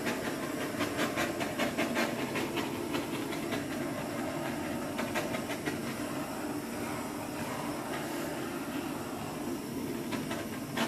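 Handheld gas torch flame hissing steadily as it is played over wet acrylic pour paint to bring up cells, with a few faint crackles in the first few seconds.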